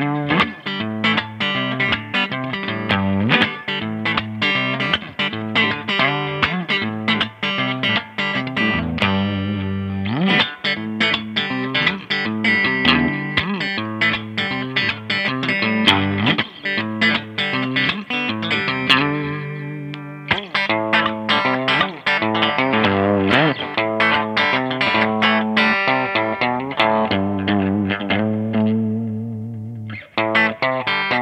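G&L ASAT Classic Telecaster-style electric guitar, fitted with old strings, played through a Fender combo amp: a continuous, bright-sounding run of picked notes. About two-thirds of the way in there is a brief pause where the notes ring out, then the playing picks up again.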